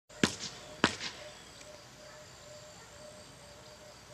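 Two sharp knocks about half a second apart in the first second, each followed by a fainter knock, over faint outdoor background with a soft, broken tone.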